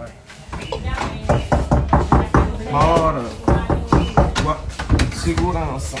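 A bedroom door's handle is worked and the door is opened, making a string of irregular clicks and knocks. Short bits of voices come in about halfway through and again near the end.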